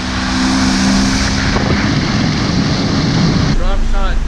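Bass boat's outboard motor running at speed, a steady engine hum under the loud rush of spray off the hull and wind on the microphone. About three and a half seconds in it cuts off abruptly to a quieter scene where a voice begins.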